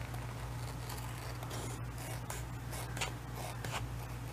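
Scissors cutting along the edge of a paper divider sealed in self-adhesive laminating sheet: quiet, repeated snipping and rasping of the blades through the plastic-coated paper.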